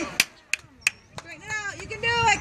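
Three sharp knocks in the first second, then distant voices calling out in the second half.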